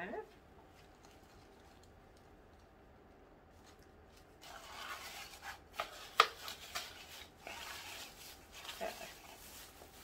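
Near silence for about four seconds, then rustling of packing and products being rummaged through in a subscription box, with a few sharp clicks and taps, the loudest a little past the middle.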